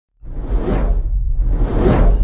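Cinematic intro sound effect: two rising whooshes over a deep low rumble, starting about a fifth of a second in.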